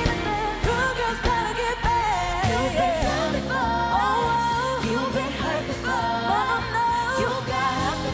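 Live pop song performed by a girl group, with a female lead voice singing over a backing track. A heavier bass line comes in about three seconds in.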